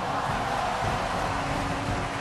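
Steady rushing whoosh sound effect of a production-company logo intro, with a faint low hum joining about halfway through.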